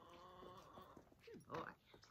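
A dog whining faintly in a drawn-out, steady tone.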